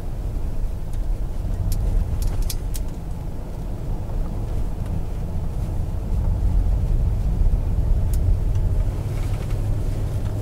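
Car cabin noise while driving: engine and tyre-on-road noise as a steady low rumble, with a few light clicks scattered through it.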